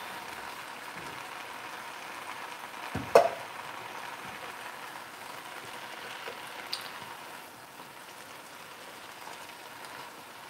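Leafy greens sizzling in a hot frying pan as they are tossed with tongs, a steady frying hiss. One sharp clack about three seconds in is the loudest sound, with a lighter click a few seconds later.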